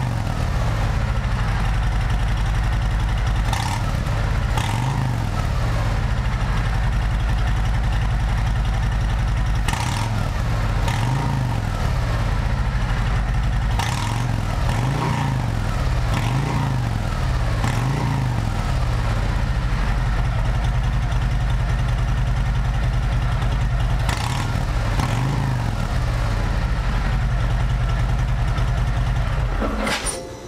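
Harley-Davidson Road Glide Special's Milwaukee-Eight 114 V-twin idling through new S&S slip-on mufflers, blipped several times so the pitch rises and falls, then shut off at the end. The exhaust is fairly tame, almost stock-sounding, because the mufflers' dB-killer baffles are still fitted.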